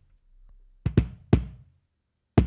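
Layered kick drum playing back from an MPC Renaissance sequence: three hits in quick succession about a second in, each ringing out with a long low tail before it fades. The kick is still ungated, its tail too long.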